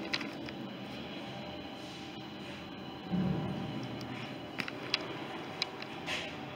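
Steady indoor background noise with a short low thump about three seconds in and a few sharp clicks near the end.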